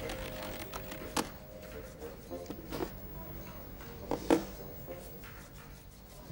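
A few scattered sharp clicks and knocks, the loudest a little past four seconds in, with a held background-music tone fading out about a second in.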